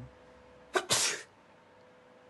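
A man sneezes once, a single sharp burst about three quarters of a second in that lasts about half a second.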